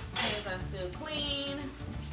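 A short sharp clatter of tableware just after the start, over background music and voices.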